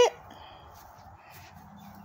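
A spoken word ends, then faint, steady outdoor background noise with no distinct event.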